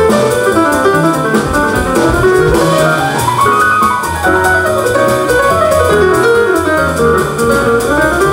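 Live jazz combo instrumental: a stage piano plays quick rising and falling runs over upright bass and drums, with no singing.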